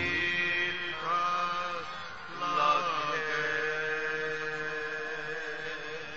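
Kirtan singing drawing to a close: a voice glides between notes, then holds one long note that slowly fades, with no drumming.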